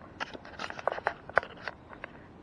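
Knitted clothing rubbing and brushing against a chest-mounted camera: a quick run of irregular rustles and sharp clicks.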